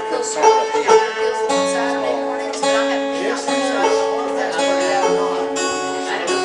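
Old-time string band playing a tune together: banjo, guitars and upright bass plucking under long held fiddle notes, with a change of notes about a second and a half in.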